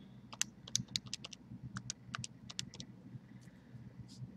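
Calculator keys being pressed in quick, irregular succession, a dozen or more small clicks, as a calculation is keyed in; the clicks thin out in the last second.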